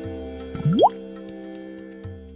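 Logo jingle music holding a steady chord, with a quick upward-sliding 'bloop' sound effect about half a second in that is the loudest moment.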